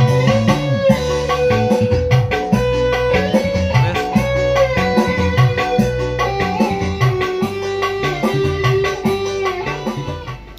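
Guitar-led recorded music with a steady, repeating bass line, played from a phone through a mixing console and sound-system speakers while the console's channel levels are tested.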